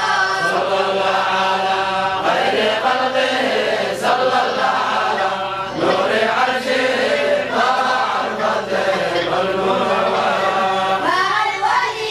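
A group of boys chanting an Islamic devotional song in unison, with long held notes that slide up and down in pitch.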